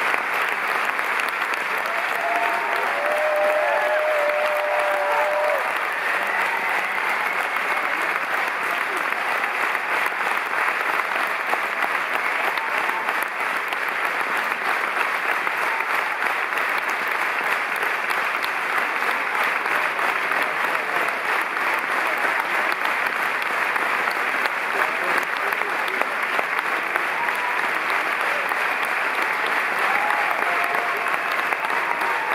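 Theatre audience applauding steadily and at length, with a few cheers rising above the clapping a few seconds in.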